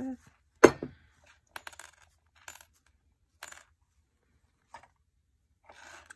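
Small soldered silver chain links clinking: one sharp, loud clink about half a second in, then a few lighter, scattered clinks.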